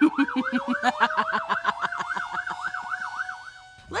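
Siren sound effect in a fast warbling yelp, about five pitch sweeps a second over a slowly rising tone, cutting off just before the end.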